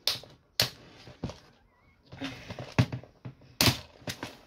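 A clear plastic bead storage box being handled, giving a series of sharp plastic clacks at irregular intervals of about half a second to a second, with quieter rustling between.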